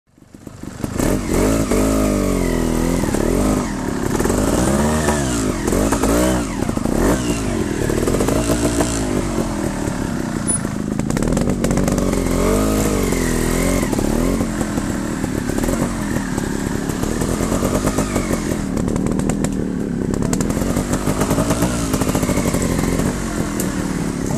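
Trials motorcycle engine revving up and down over and over, its pitch rising and falling every second or two as the bike is worked up a steep, muddy trail.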